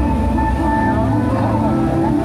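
Loud amplified sound blaring from a loudspeaker mounted on a procession jeep: dance music with a voice over it, playing without a break.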